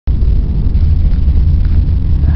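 Loud, steady low rumble of wind buffeting the camera microphone outdoors.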